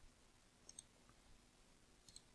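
Two faint computer mouse clicks close together, under a second in, against near silence.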